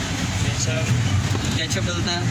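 Steady low rumble of street traffic with voices in the background.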